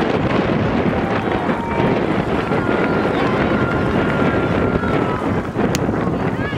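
Wind buffeting the camcorder's microphone: a loud, steady rough noise, with faint voices from the field underneath and a single click near the end.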